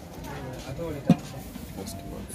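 Voices talk in the background, with one sharp knock about a second in as the aluminium saucepan is handled on the charcoal stove.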